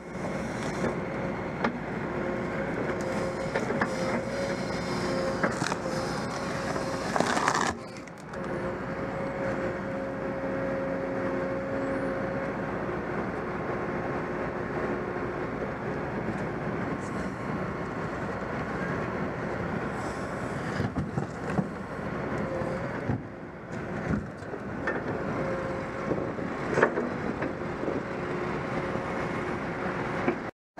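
Diesel engines of a tracked excavator and a tracked dumper running steadily, with a steady hum in the background and a few knocks from debris being handled.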